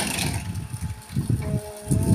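Electric sugarcane juicer running, a low uneven rumble that swells a little over a second in.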